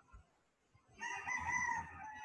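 A rooster crowing once, faintly, starting about a second in and trailing off.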